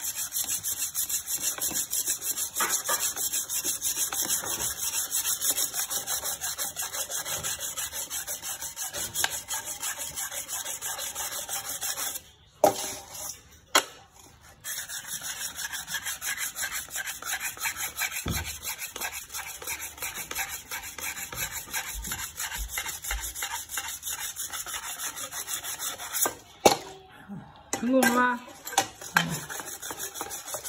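A cleaver blade is rubbed back and forth on a wet whetstone in rapid, even strokes. The strokes pause for a couple of seconds about twelve seconds in, and again briefly near the end.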